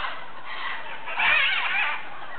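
A flock of many parrots squawking and screeching together in an overlapping chorus, with a louder burst of calls a little past a second in.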